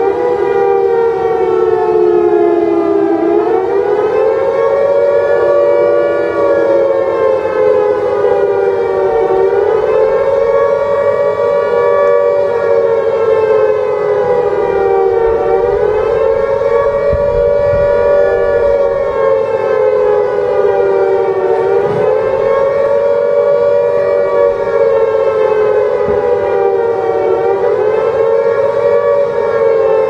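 Civil defense siren winding up to pitch and then wailing, its two close tones rising and falling slowly about every six seconds.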